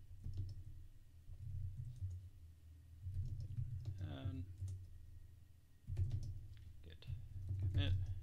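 Computer keyboard keys clicking in short, irregular runs as terminal commands are typed.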